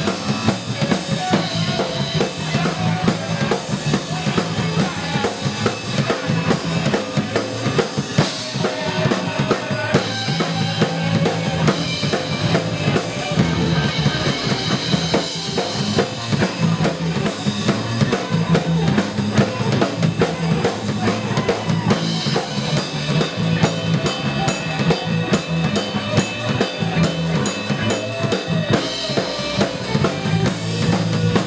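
A live rock band playing an instrumental passage with no singing, the drum kit loudest, over bass and electric guitar.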